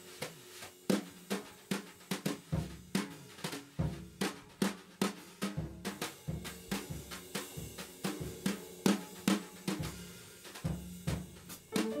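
Small jazz band of drum kit, piano, guitar and bass playing a tune. Crisp drum strokes on snare, rims and hi-hat, about three a second, stand out over the pitched notes.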